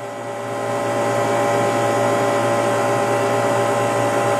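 Refrigeration condensing unit running: a steady hum with several whining tones, growing louder over the first half second and then holding steady.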